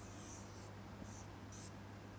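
Felt-tip marker drawing on a whiteboard: one long stroke, then two short ones, as a circle and lines are drawn. A faint low hum runs underneath.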